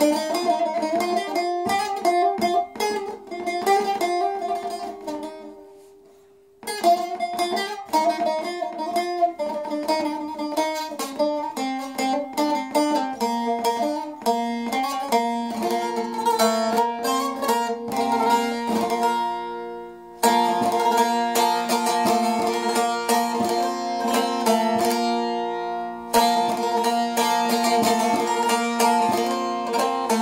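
Long-necked bağlama (saz) played solo with a plectrum: a plucked instrumental introduction of quick melodic runs. The playing fades and stops briefly about six seconds in, then resumes, and from about twenty seconds in it turns louder and fuller, the melody over steadily ringing drone strings.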